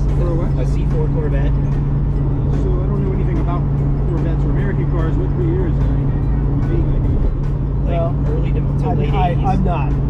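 Steady low drone of a car's engine and tyres heard from inside the cabin while driving at highway speed, with music and indistinct talk over it.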